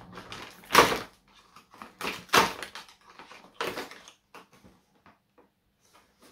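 A small cardboard advent-calendar box being handled and opened: three louder rustling scrapes about a second and a half apart, then fainter bits of fiddling with the packaging.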